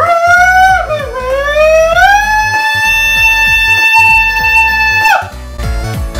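A person's voice holding one long, loud, high sung note: it dips about a second in, rises to a steady pitch held for about three seconds, then breaks off with a falling drop a little after five seconds in, over background music.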